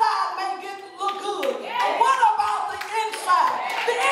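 A woman's voice through a microphone, preaching in a half-sung, chanted delivery with held notes that slide in pitch, over hand-clapping.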